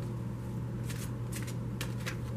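A deck of oracle cards shuffled by hand: a handful of short, crisp card rustles, most of them in the second half, over a steady low hum.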